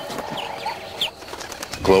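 A few short rising bird chirps, about three in a second or so, over a fading held tone.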